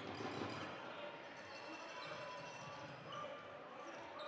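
Basketball being dribbled on a hardwood gym floor, under a steady murmur of crowd chatter in a large gym.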